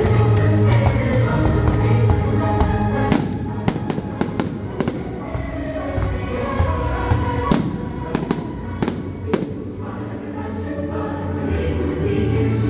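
Aerial fireworks shells bursting in two quick runs of sharp bangs, a few seconds in and again past the middle, over a loud choral music soundtrack that plays throughout.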